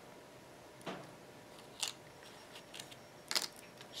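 Small wooden craft cutouts being handled and slid across a craft mat: a few light clicks and taps, the sharpest pair about three and a half seconds in.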